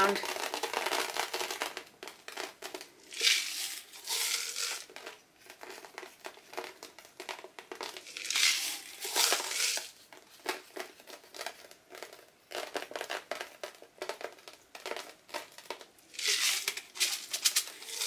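Dry, crinkly decorative filler being handled and sprinkled by hand onto a canvas. It crinkles and rustles in three louder bursts, about three, eight and sixteen seconds in, with small ticks and rustles between.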